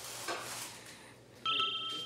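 A single bright bell-like ding about one and a half seconds in, made of two clear tones, with the higher tone ringing on briefly.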